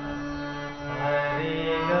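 Hand-pumped harmonium playing sustained reed notes of an alankar exercise. A lower note is held underneath while new notes come in about a second in and again near the end.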